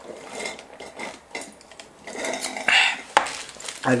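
Small handling noises of drink cups and food packaging on a table, with a brief rustle a little before three seconds in and a sharp click just after it.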